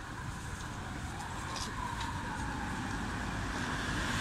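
Road traffic: a steady rumble of motor vehicles, growing gradually louder toward the end as a vehicle approaches.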